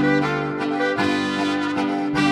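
Slovenian folk band playing an instrumental passage live: piano accordion with clarinet and trumpet.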